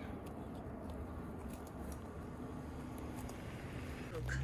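Sheep grazing close by, with a few faint clicks of grass being cropped, over a steady low background rumble.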